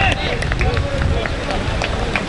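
Wind buffeting an outdoor microphone with a steady low rumble, under faint shouts from players across a football pitch.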